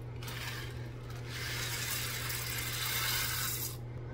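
Dry pasta shells poured from a cardboard box into a pot of water: a rattling, rushing pour that swells about a second in and stops shortly before the end, over a steady low hum.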